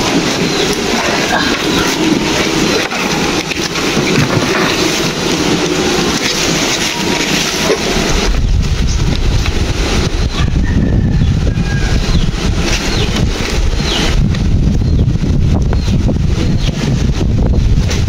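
Wind buffeting the microphone: a rustling hiss at first, turning into a loud low rumble about eight seconds in.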